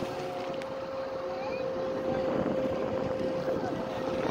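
Wind buffeting the microphone, with a steady high hum running underneath and a few faint chirps.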